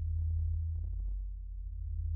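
Mutable Instruments modular synthesizer playing a deep, steady, sine-like bass drone, with a few faint short clicking blips over it in the first second or so.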